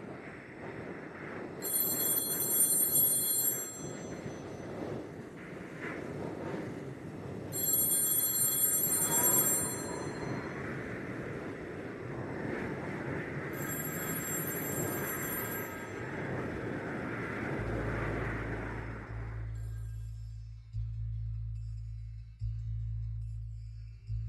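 A telephone bell rings three times, each ring about two seconds long and some six seconds apart, over a steady rushing noise. Near the end the noise stops and a low, steady bass drone comes in.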